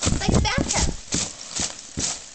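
Foam packing peanuts rustling and squeaking in a cardboard box as hands stir through them: a quick, irregular run of crunches and clicks.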